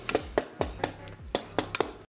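Background music with a quick beat of sharp drum hits and bass notes.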